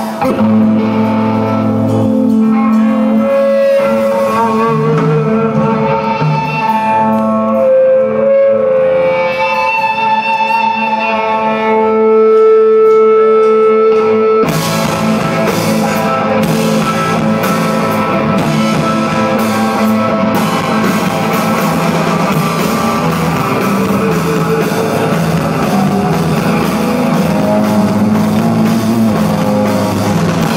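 Live rock band playing a song: the guitars play alone at first, then about halfway through the full band with drums comes in suddenly and the sound thickens.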